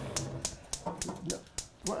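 Gas range's electric spark igniter clicking rapidly and evenly, about five or six clicks a second, while the burner is being lit, with faint low talk mixed in.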